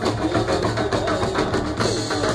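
Live band playing dandiya dance music: a steady, fast drum beat under a wavering melody line.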